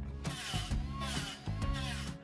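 A small cordless rotary tool whirring against steel roll-cage tubing in two runs, with a short break about a second and a half in, over background music.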